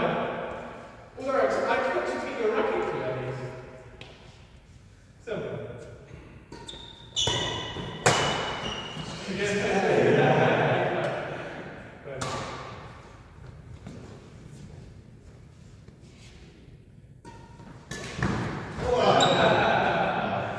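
Badminton rally in an echoing sports hall: sharp racket-on-shuttlecock hits and thuds, the clearest around 7 to 8 seconds in and again about 12 seconds in. Players' voices come and go around them.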